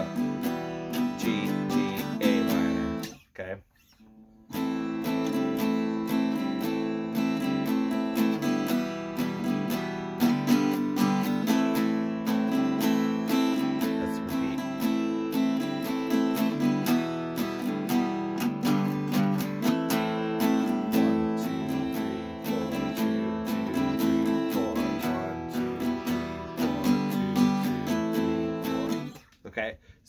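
Acoustic guitar strummed in a steady down-down-up pattern, moving through A minor, E minor and G chords. The playing breaks off for about a second, about three seconds in, then runs on until just before the end.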